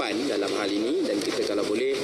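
A man speaking into a microphone in a large hall; the speech recogniser wrote no words here.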